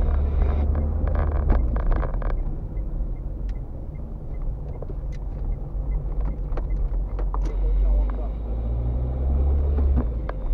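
Car driving slowly, heard from inside the cabin: a steady low engine and road drone, with scattered light knocks and rattles.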